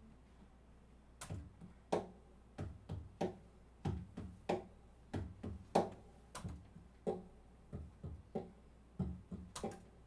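Rhythmic percussion tapped on the body of an acoustic guitar, low thumps and sharper slaps at about two hits a second, starting about a second in: a beat being laid down for a loop station.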